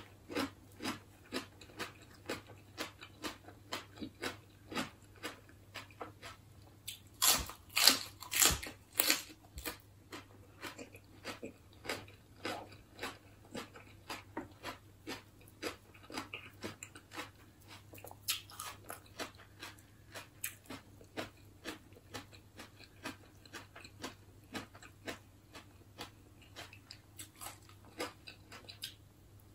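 Close-miked chewing of a mouthful of Isan snail salad (koi hoi), a steady run of crunches about two or three chews a second, with a louder spell of crunching about seven to nine seconds in.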